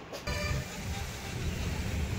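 Steady low rumble of road traffic with music mixed in, starting abruptly about a quarter second in after faint room tone.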